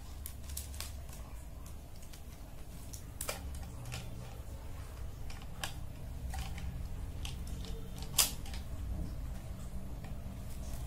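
Light, irregular clicks and taps of plastic pens knocking against each other and a tin can as they are set upright one by one under a rubber band, with one sharper click about eight seconds in.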